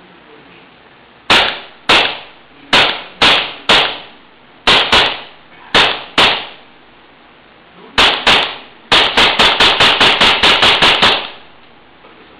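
Glock-style pistol firing: about eleven single shots at uneven intervals, then a rapid burst of about a dozen shots in about two seconds, each shot a sharp crack with a short ringing tail.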